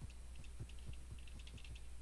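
Faint, irregular clicking from computer input being operated, several clicks a second, over a low steady electrical hum.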